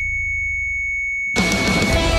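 A steady, high-pitched electronic tone held for over a second, then music with guitar starts abruptly about one and a half seconds in.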